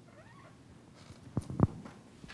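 Quiet room tone, broken about a second and a half in by two short low thumps close together, the second louder.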